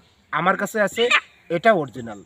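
Golden Brahma hen calling three times while held in a man's hands.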